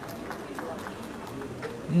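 Quiet arena ambience with faint background voices murmuring, and a man's voice beginning loudly at the very end.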